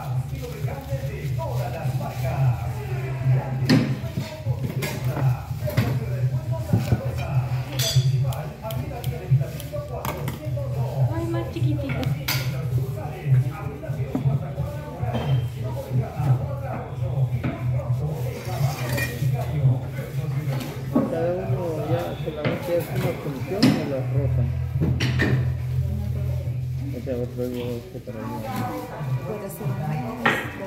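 Scattered sharp clicks and knocks of hand cigar-rolling work, as a tobacco-cutting blade and wooden cigar moulds are handled on a wooden workbench. A steady low hum runs underneath.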